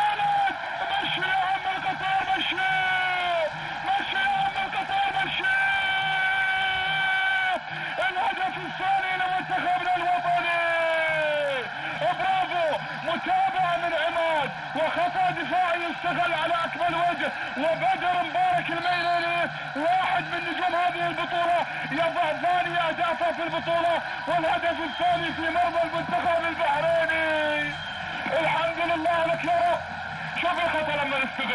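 Voices celebrating a goal with long, high-pitched held cries that slide downward at their ends. Several voices overlap over continuous stadium crowd noise.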